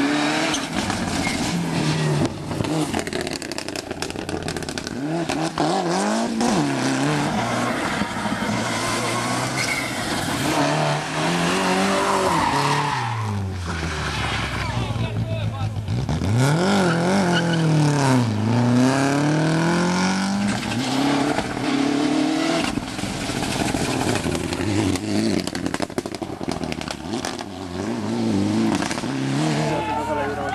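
Rally cars, among them a Mitsubishi Lancer Evolution, driven flat out past the stage side, engines revving high and dropping back again and again as they shift gears and pass by.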